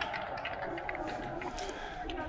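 Faint distant voices of footballers calling on an open pitch, with no crowd noise.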